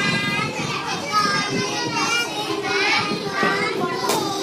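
Several young children's voices overlapping as a group chants together.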